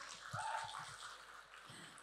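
A quiet pause in unaccompanied singing: only faint room noise from the hall's sound system, with a brief faint tone about a third of a second in.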